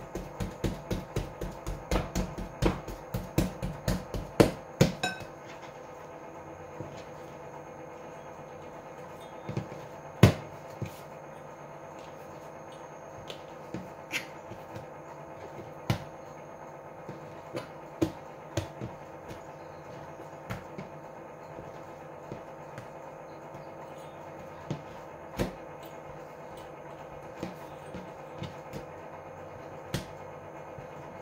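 Metal dough cutter knocking on the countertop as it chops through bread dough: a quick run of taps in the first five seconds, then single sharp knocks every couple of seconds, over a steady faint hum.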